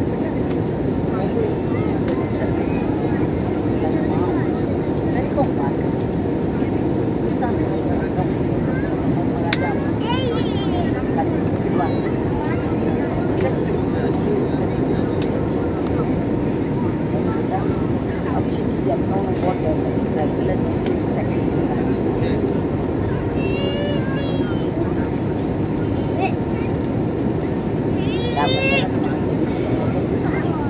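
Steady cabin noise of a jet airliner in flight, heard beside the wing-mounted engine: a constant rush of engine and airflow with a faint steady hum. Low murmur of passengers' voices underneath, and a few short high-pitched squeaks.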